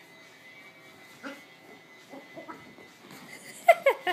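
Dogs at rough play: near the end, two or three short, sharp yelps that fall in pitch, after a few seconds of quieter shuffling.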